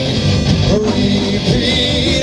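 Live indie rock band playing loudly: electric guitars and drums in full swing, heard through a room microphone.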